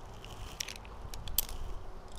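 Climbing hardware being handled: light clicks and rustles of carabiners and rope on a hitch climbing system, with a run of small clicks in the second half.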